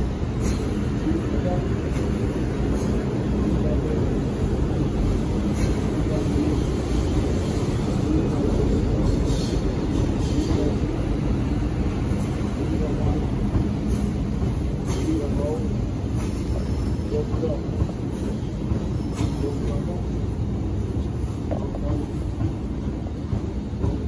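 MTR Tsuen Wan Line electric train rolling slowly on depot tracks: a steady low rumble with a constant hum and scattered sharp clicks from the wheels on the rails.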